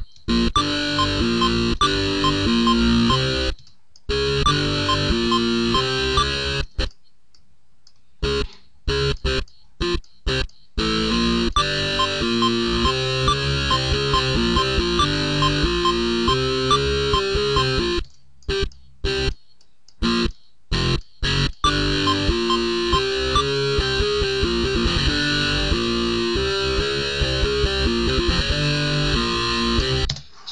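FL Slayer, FL Studio's electric guitar emulator plugin, playing distorted electric guitar notes in a short repeating riff. Playback stops and restarts several times, with longer pauses about 7 seconds in and from about 18 to 21 seconds in. The notes are undamped, with no palm muting, and sound very sterile.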